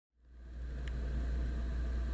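Steady low electrical hum with faint background hiss, fading in over the first half second, with one faint click just under a second in.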